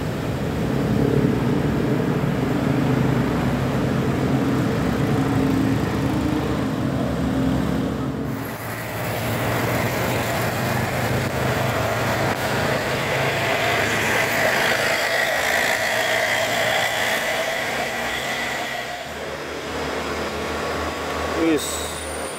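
Diesel engine of a timber-laden truck running loud as it passes close by. After an abrupt change about 8 seconds in, passing motorcycles and cars with a steady whine. A brief warbling horn sounds near the end.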